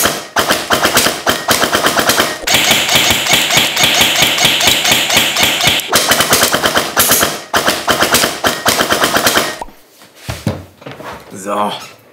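ASG CZ Scorpion EVO3 electric airsoft gun with a double sector gear, Jefftron Leviathan trigger unit and SHS 140 spring, firing long full-auto bursts at a very high rate with only brief pauses, stopping about ten seconds in. The motor pulls the 140 spring without strain, and each shot carries a faint metallic vibration that the owner has not yet traced.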